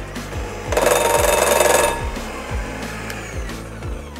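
Electric hand mixer switched on for just over a second, about a second in, with its beaters lifted to the rim of the bowl to spin the cookie dough off them: a short, loud motor whine over background music.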